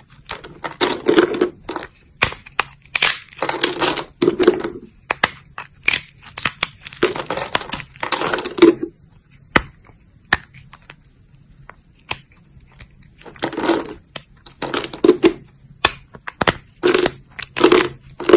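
Thin plates of dry soap snapped and crushed between the fingers: repeated spells of crisp crunching and cracking, with a quieter stretch of a few isolated snaps around the middle.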